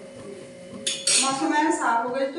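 Metal kitchen utensils clinking: a couple of sharp clatters close together about a second in, as a steel spatula knocks against the griddle pan and steel plate.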